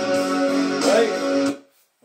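Guitar rock song with singing, played from a Matsui hi-fi's CD player through its speakers, cutting off abruptly about one and a half seconds in as the CD is stopped.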